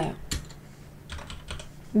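A few scattered keystrokes on a computer keyboard, clicking at irregular intervals.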